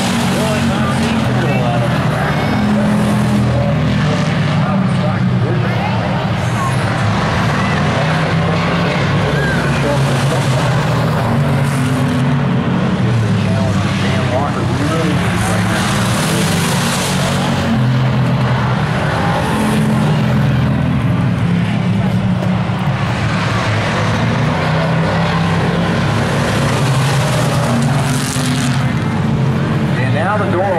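Hobby stock race cars running laps on an oval track, engines held at a steady drone that swells as the cars pass close to the grandstand, about halfway through and again near the end.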